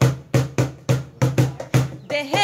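A drum rhythm accompanying a Bengali folk song, struck about four times a second in a break between sung lines.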